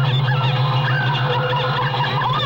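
Experimental electronic soundtrack: a steady low drone under a dense flurry of short, quickly sliding warbling tones.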